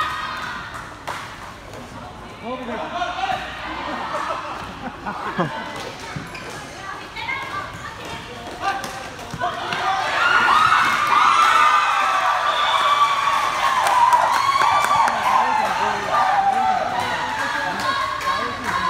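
Players and onlookers shouting during a futsal game, with thuds of the ball being kicked and bouncing on the court floor. From about ten seconds in, the shouting grows louder, with many voices at once.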